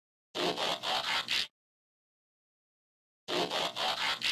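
Intro sound effect for a logo card: a noisy burst of about five quick pulses, lasting about a second, played once and then repeated almost exactly about three seconds later.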